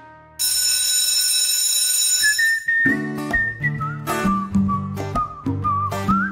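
A sudden loud, steady, high-pitched ringing for about two seconds, then background music: a whistled tune over plucked acoustic guitar with a steady beat.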